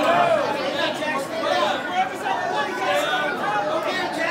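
Several spectators' voices overlapping: steady chatter and calling out with no clear words.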